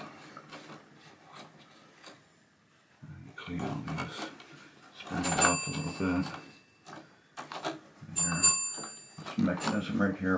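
The 10-point chime bell on a 1972 Williams Honey pinball's match unit rings briefly twice, about five and eight seconds in, as it is knocked while the unit is wiped with a cloth. Cloth rubbing and handling noise run around the rings.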